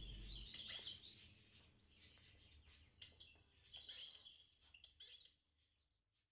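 Faint bird chirps: short high calls, several in the first second, then scattered and thinning out until they stop near the end.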